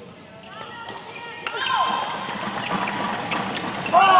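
Badminton rally: a shuttlecock struck by rackets, sharp clicks at irregular intervals, over the voices and shouts of a crowd in a sports hall that swell about a second and a half in.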